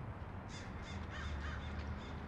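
A bird calling: several short calls in quick succession from about half a second in, over a low steady rumble.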